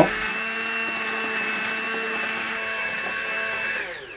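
Hand blender running steadily with a whine, puréeing milk, garlic and anchovies in a small stainless-steel saucepan. Switched off near the end, its whine falls as the motor spins down.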